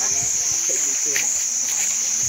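Steady high-pitched insect drone that holds without a break throughout.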